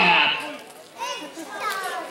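Young voices shouting and calling out around a basketball court. The loudest shout comes at the start and fades within about half a second, and scattered higher calls follow near the end.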